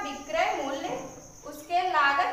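A woman's voice talking in short phrases, with a steady high-pitched tone running underneath.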